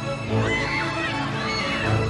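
Dramatic background score: low beats under a wavering high melody that comes in about half a second in.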